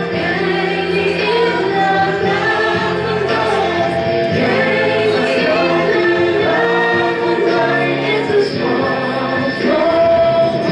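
A group of men and women singing together in chorus, holding long notes that change about once a second.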